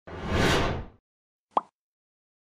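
Logo-animation sound effects: a swelling whoosh lasting about a second, then a single short pop about a second and a half in.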